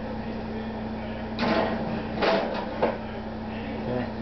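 Oven door and metal pizza pan being handled as the pizza goes into the oven: a few short clunks and scrapes, over a steady low hum.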